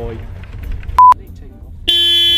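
A short, loud pure electronic beep about a second in, then, just before the end, the Porsche 356's horn begins a steady honk.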